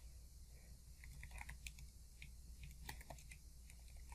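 Faint computer keyboard typing: a run of quiet, irregular keystrokes, most of them between about one and three and a half seconds in.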